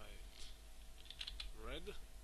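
Computer keyboard keys typed in a quick run of clicks about a second in, with a single click earlier. A short voice-like sound comes near the end, over a faint steady hum.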